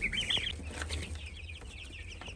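Chicks peeping: a quick run of high peeps in the first half second, then fainter scattered peeps over a low steady hum.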